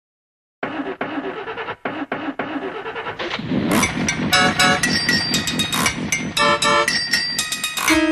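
A car engine running with a regular pulsing beat and a few brief cut-outs. About three and a half seconds in, upbeat music with drums and keyboard starts.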